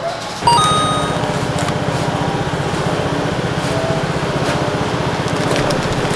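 About half a second in, a nearby engine starts a steady, fast low pulsing idle, with a short high beep as it begins.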